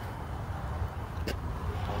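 Steady low rumble of an idling car engine, with a single sharp click a little past the middle.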